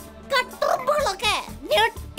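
A cartoon character's voice making short wordless vocal sounds, with a rough, grunting stretch about half a second in, over background music.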